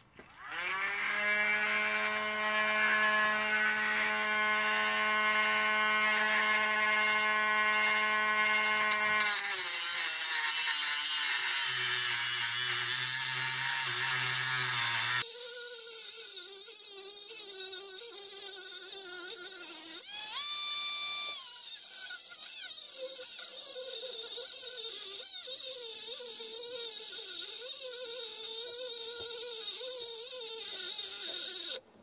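A handheld rotary tool with a cut-off wheel spins up and cuts through a threaded metal throttle elbow tube. Its whine shifts pitch a few times, rises briefly to a higher free-running tone about twenty seconds in, then wavers lower under the load of the cut.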